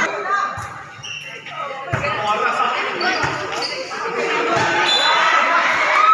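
A ball bouncing on a concrete court floor, about five bounces roughly a second and a bit apart, over the chatter of players and spectators.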